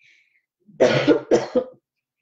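A woman coughs twice, two short loud coughs about half a second apart.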